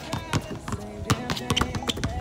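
Several basketballs bouncing on an outdoor hard court as players dribble: a rapid, irregular run of sharp thuds.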